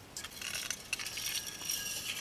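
Faint light clicks and rustling as a loudspeaker voice coil on its former is handled by hand.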